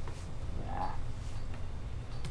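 Faint clicks of laptop keys or a trackpad over a steady low room rumble, with a brief mid-pitched sound just under a second in.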